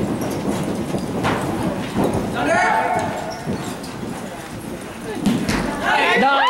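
Hoofbeats of several polo ponies cantering and galloping on indoor arena dirt, growing louder near the end as the horses come close, with spectators' voices calling out over them.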